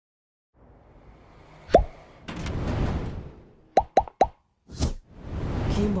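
Cartoon pop sound effects, each a short upward-gliding bloop: one about two seconds in, then three in quick succession about a second and a half later, with bursts of rushing hiss between them.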